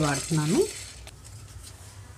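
A wooden spatula stirring roasting dal, dried red chillies and garlic in a nonstick frying pan: light scraping and rattle of the grains. After the first half second it fades to faint scattered ticks over a low steady hum.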